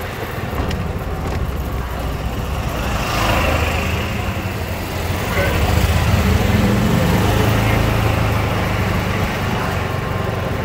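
Golf cart driving along a street: a steady low running rumble with road noise, a little louder from about six seconds in.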